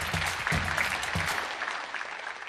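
A large seated audience applauding, the clapping thinning out near the end.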